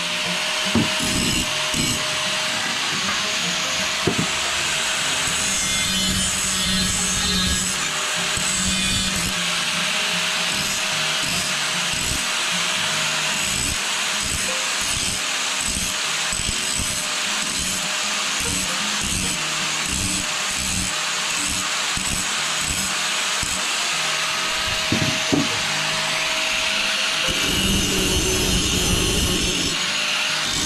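Electric angle grinder running steadily with its disc on the end of a galvanised steel angle, grinding the metal with a steady motor whine under a harsh grinding hiss.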